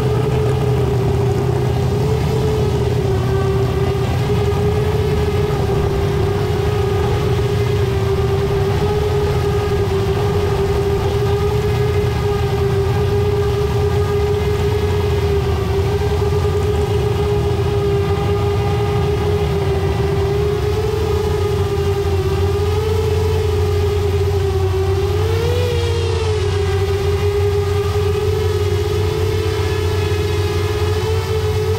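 FPV quadcopter's electric motors and propellers whining steadily as the drone holds a low hover, the pitch wavering slightly and rising briefly near the end with a throttle blip. A steady low rumble runs underneath.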